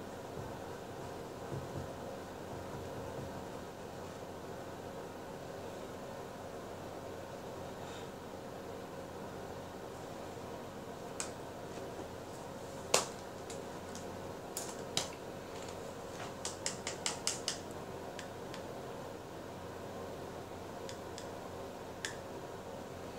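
A steady mechanical hum, with scattered sharp clicks in the middle and a quick run of about six clicks a little after the middle.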